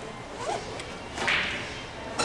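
A short swish a little past halfway through, from a pool ball rack being slid over the table cloth while the balls are racked.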